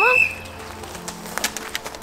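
A voice trails off at the start, then faint scattered footsteps on a dry dirt path as two people walk.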